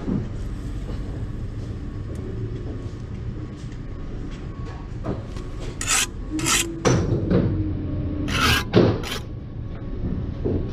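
A hand tool scraping on mortar and brickwork in several short strokes, bunched in the second half, over a steady low rumble.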